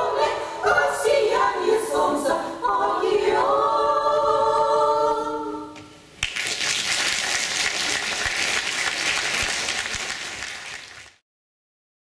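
Women's vocal ensemble singing the last phrases of a song and ending on a held chord that fades out about halfway through. Audience applause then breaks out suddenly and goes on until it cuts off shortly before the end.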